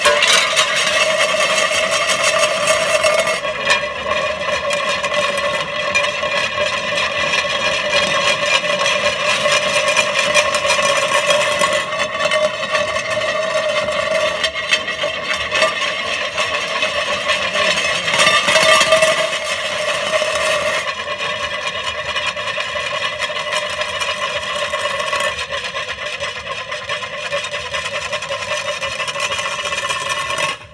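Experimental noise performance: a loud, steady drone of several held pitches under a scraping, rattling texture, with a brief louder swell about two-thirds through, cut off abruptly at the end.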